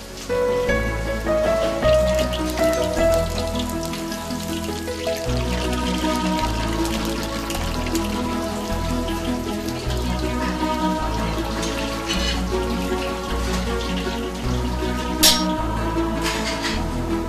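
Background music with a steady bass over the crackle of battered frog pieces deep-frying in hot oil in a wok. There is a brief sharp clatter near the end.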